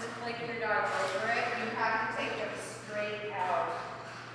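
A woman talking, with no other distinct sound besides a steady low hum.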